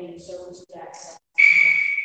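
A voice briefly, then a loud, steady, high-pitched whistle-like tone that starts about halfway through and holds for about a second, falling slightly in pitch as it ends.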